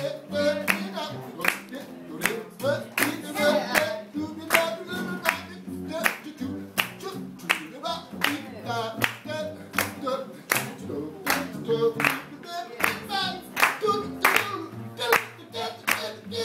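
Jazz scat singing on "do do do" syllables over a plucked upright double bass walking line, with hand claps keeping the beat about once or twice a second.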